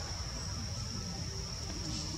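Insects calling in the forest trees: a steady, high-pitched drone that holds one pitch throughout, over a low rumble.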